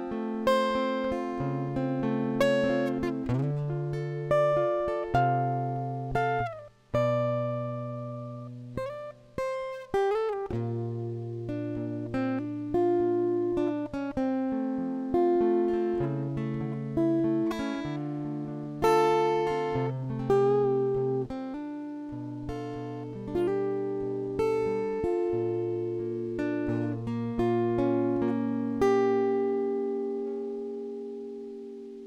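Acoustic guitar played solo, picked chords over a moving bass line, with two brief breaks about seven and nine seconds in; the last chord is struck near the end and left to ring.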